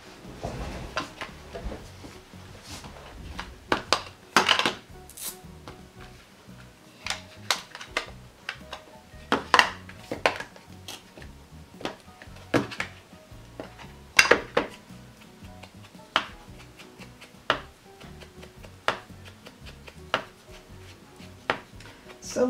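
Irregular clicks and knocks of plastic ink pad cases being handled, opened and set down on a table, with a round ink blending tool tapped against the pad and the edges of paper coins.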